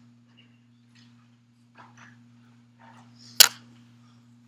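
A single sharp click about three and a half seconds in, with a smaller echo of it just after, over a steady low hum and faint scattered small noises.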